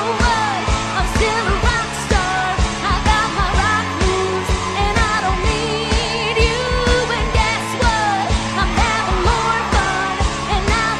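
Rock band playing with a steady drum beat and bass under it, and a woman singing lead over the band.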